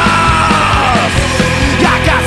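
Loud punk rock music with a steady drum beat. A long held high note slides down slightly over the first half, and a lower held note follows in the second half.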